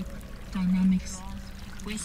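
Water pouring and gurgling into a glass, with a voice holding a low, steady note about half a second in.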